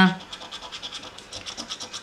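A coin scraping the coating off a scratch-off lottery ticket in quick, even strokes, several a second.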